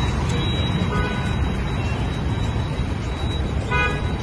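Street traffic: motorbike and car engines running past in a steady rumble, with short horn toots about a second in and again near the end.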